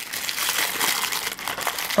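Thin pink wrapping crinkling steadily as hands unfold it from a small plastic miniature, a dense crackle of fine ticks.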